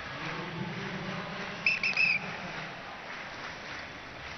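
Referee's whistle blown in three short, high blasts about two seconds in, stopping the freestyle wrestling bout for interlocked fingers, over steady arena background noise.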